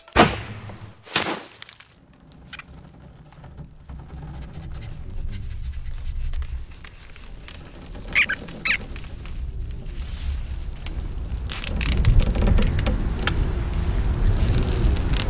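Cartoon sound effects: two sharp snaps of a bowstring within the first second and a half, then a low rumble that swells toward the end, with a few short high squeaks about eight seconds in.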